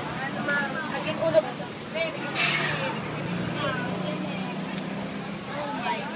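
People talking in the background, untranscribed, with a motor vehicle engine running steadily from about halfway through and a short hiss about two and a half seconds in.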